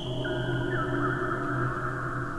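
Electroacoustic music made from much slowed-down recordings of a bamboo wind chime and a metal wind chime, heard as several overlapping long held tones. A higher tone comes in about a quarter second in over a steady low one.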